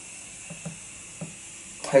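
Quiet sniffing of a glass of raspberry wheat beer, a faint hiss with a few small ticks, before a man's voice comes back in near the end.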